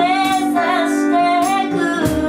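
A woman singing a slow melody in long held notes, accompanied by acoustic guitar and keyboard.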